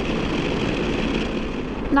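BMW R 1250 GS boxer-twin motorcycle cruising along a country road: steady engine, tyre and wind noise.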